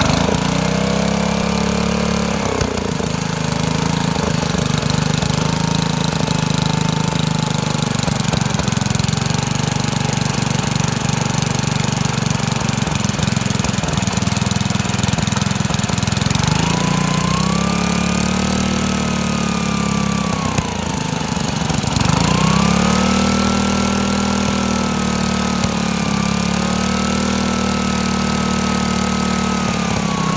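Briggs & Stratton 318 cc single-cylinder air-cooled engine running, its speed changed by hand at the carburettor linkage. It runs fast for the first couple of seconds and settles to a lower steady speed. It speeds up again a little past halfway, dips briefly, then picks up and holds the higher speed.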